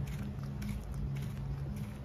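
Footsteps on brick paving at a walking pace, about two steps a second, over a low steady hum.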